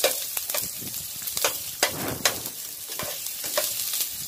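Ginger and onion sizzling as they sauté in oil in a nonstick pan, with a steady high hiss. A metal spatula stirs through them, scraping and tapping against the pan in a string of short strokes.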